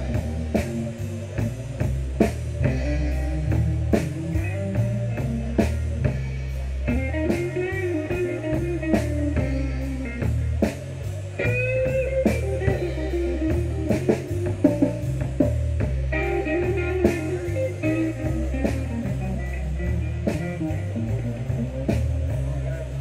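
Live rock band playing: electric guitar lines over a drum kit keeping a steady beat, with a bass line underneath.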